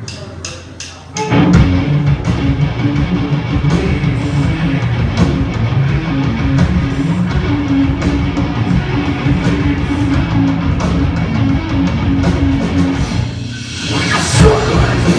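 Live rock band starting a song with a few quick clicks, then crashing in loud about a second in with electric guitars, bass and drum kit playing together. The sound drops out briefly just before the end.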